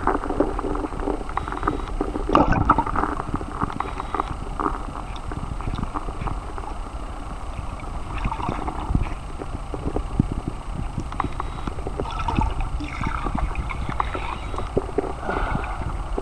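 Stream water heard through a submerged camera: a muffled, steady rush and gurgle with many small irregular clicks and knocks.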